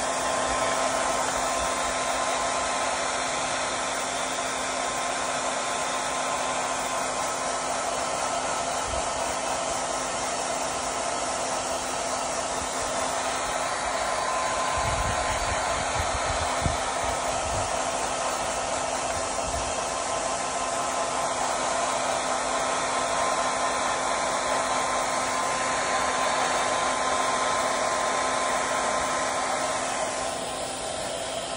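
Blow dryer running steadily, a rush of air with a faint steady hum, blowing out a Moluccan cockatoo's feathers. A few low thumps come about halfway through.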